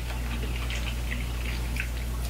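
Faint chewing and small mouth clicks from people eating corn on the cob, over a steady low hum.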